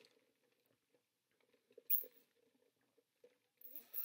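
Sipping a drink through a straw from a paper cup: a short slurp about two seconds in, and more sucking beginning near the end, with near quiet between.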